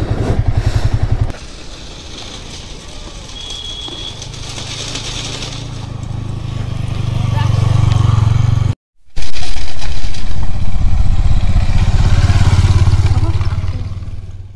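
Motorcycle engine running at low speed as the bike rides slowly toward the listener, growing louder as it nears. After a brief break about nine seconds in, the engine is loud and close.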